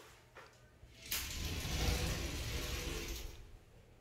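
Sliding glass shower door being pushed open along its metal track: about two seconds of rolling, scraping noise from the door, starting about a second in.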